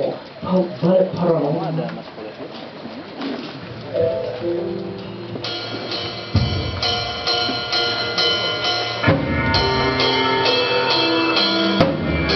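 Live band starting a song: a man's brief spoken introduction, then sustained guitar notes, and from about six seconds in the drum kit and bass come in with a steady beat.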